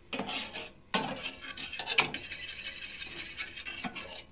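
A metal fork stirring milk in a metal saucepan, scraping against the pan with a few sharper clinks, as yogurt starter is mixed into the warm milk.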